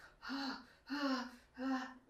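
A woman imitating quick, heavy breathing: three gasping breaths in a row, voiced and breathy, acting out the rapid breathing of stress.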